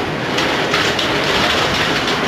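An elevator running as it travels up: a loud, steady noise with scattered clicks and rattles.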